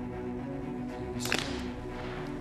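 Background music with a sustained bed of held tones, and one sharp crack about 1.3 s in: a shotgun shot at a clay target on a trap range.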